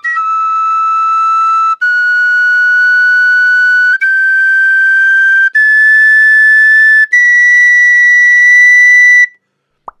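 Lír chrome-plated brass tin whistle in D playing a slow rising scale of long held notes in its second octave, five steps each held about a second and a half, stopping cleanly about nine seconds in. The notes sit in tune, with the tuning joint pulled out a fair bit.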